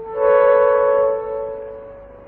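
Electronic title-card music sting: a sustained chord changes to a higher chord just after the start, then fades away.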